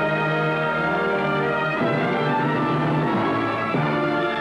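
Orchestral theme music: held chords, with a busier, quicker passage in the middle that settles back into held notes near the end.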